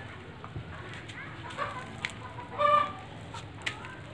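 A few short pitched bird calls over a steady background, the loudest just under three seconds in.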